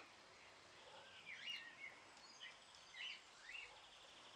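Near silence outdoors with a few faint, short bird chirps scattered through it.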